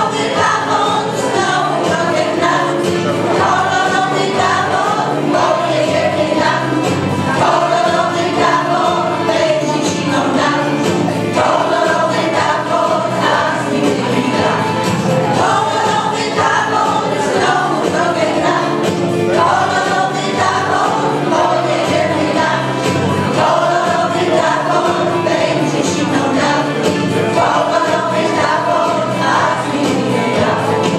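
A women's folk choir singing a song, continuous and steady in level.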